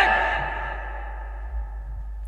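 The echo of a man's shouted words through a loudspeaker system, ringing on and fading out over the first second or so, over a steady low hum.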